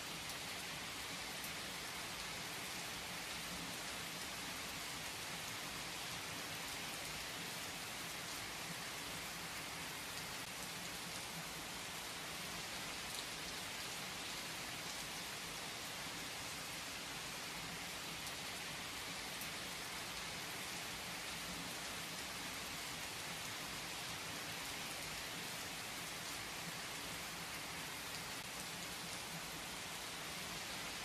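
Steady rain falling in an even hiss, with a few sharper drop ticks now and then.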